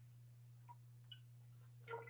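Near silence: room tone with a faint steady low hum and a few soft ticks, then one short, slightly louder sound near the end.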